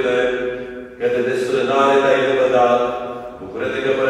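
A voice chanting an Orthodox akathist on long held notes, in phrases that break about a second in and again near the end.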